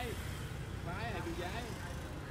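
Steady low rumble of motorbike traffic on a city street, with faint voices in the middle.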